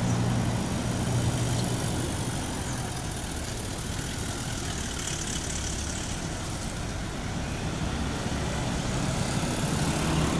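Engine of a Toyota Land Cruiser jeep running as it pulls away and drives off, its low hum loudest at the start, then a steady traffic noise.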